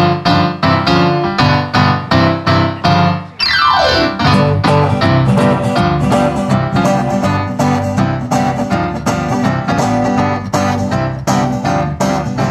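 Roland RD-300SX stage piano playing a rhythmic chordal intro, ending in a quick downward glissando about three and a half seconds in. Then acoustic guitars join and the band plays on in a steady up-tempo rhythm.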